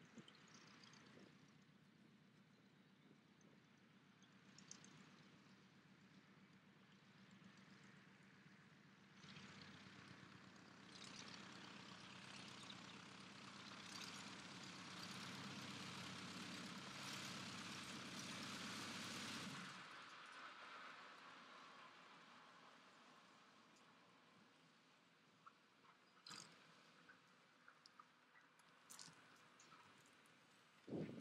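VariEze's piston engine running at taxi power as the aircraft taxis nearer, growing steadily louder, then stopping suddenly about two-thirds of the way through. A few sharp clicks follow near the end.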